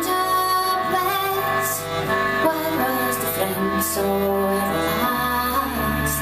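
Live folk music: a woman singing over accordion, with deeper held notes joining about four seconds in.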